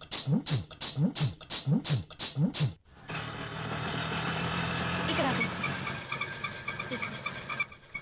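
A rhythmic comic sound effect for about three seconds: sharp beats a little more than twice a second, with low sliding tones rising and falling between them. It cuts off suddenly and gives way to the steady running of an auto-rickshaw's small engine.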